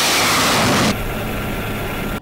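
Rocket motor of a truck-launched missile firing, a loud steady rushing that drops off abruptly about a second in to a quieter rushing with a faint hum.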